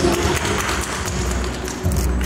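Applause: several people clapping, a dense patter of hand claps.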